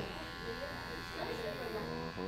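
Electric hair clippers buzzing steadily, with faint voices in the background.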